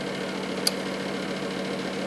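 Steady low hum of a small electric motor over even background hiss, with a single short click about two-thirds of a second in.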